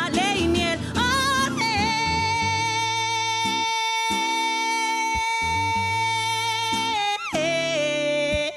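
A woman singing to her own acoustic guitar. After a wavering phrase she holds one long note for about five seconds, then drops to a lower note near the end.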